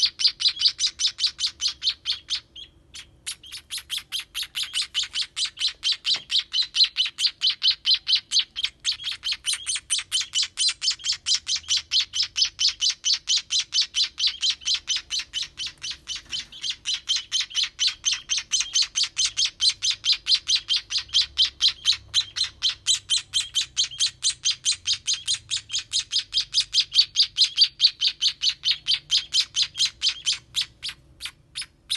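Nestling baby sparrows begging: a rapid, continuous train of high cheeps, about four to five a second, with a brief pause about two and a half seconds in. The cheeping is the chicks' hunger call while they are being hand-fed.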